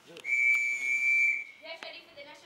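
A whistle blown in one long, steady, high blast lasting a little over a second.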